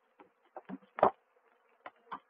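Honeybees humming faintly and steadily around a crowded hive entrance, with a few short, scattered taps over the hum, the loudest about a second in.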